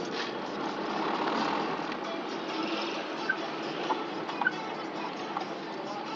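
Traffic and the car's own running heard from inside a car's cabin while driving slowly in city traffic: a steady noisy hum, with a few short, sharp clicks about halfway through.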